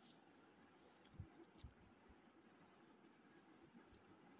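Near silence: room tone, with a few faint soft clicks and rustles a little over a second in from a hand handling the pages of an open paperback book.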